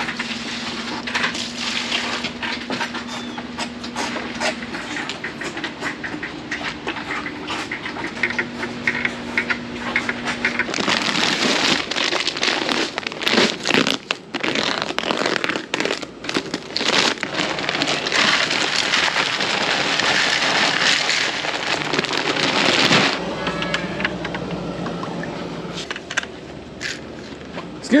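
A paper-and-plastic feed bag being handled and its easy-open string closure pulled, with rustling, crackling and scraping and the clatter of buckets as grain is scooped. A light bed of background music runs under it.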